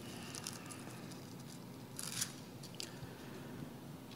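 Faint rustling of thin Bible pages being turned by hand: a few short crisp rustles, the loudest about two seconds in.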